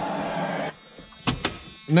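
Radio static from newly installed car speakers, a steady buzzing hiss that cuts off abruptly about two-thirds of a second in. Two sharp clicks follow about a second later.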